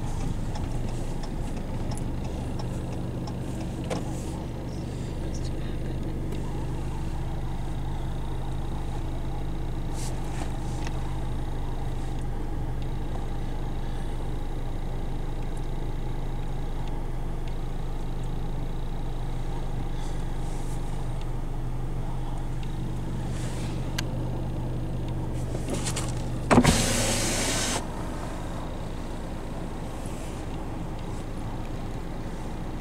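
Steady low hum inside a stopped car's cabin. Near the end a power window motor runs for about a second and a half as the side glass lowers.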